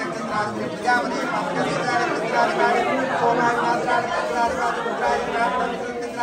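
Indistinct voices of several people talking over one another, with the echo of a large room.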